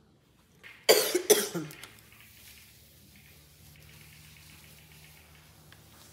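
A woman coughing twice in quick succession, about a second in; she has a sore throat.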